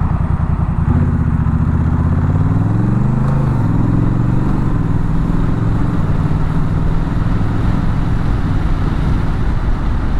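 Honda Rebel 1100's parallel-twin engine pulling away, its note rising, then dropping suddenly in an upshift a few seconds in and climbing again before settling into a steady cruise. Wind noise rushes throughout.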